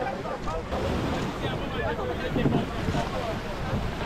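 Wind on the microphone and small waves washing onto the beach, with the voices of people talking in the background.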